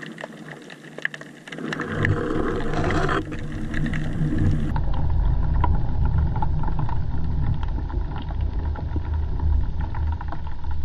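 Underwater sound picked up by a camera in its housing: scattered small clicks and crackles, joined about two seconds in by a steady low rumble of moving water.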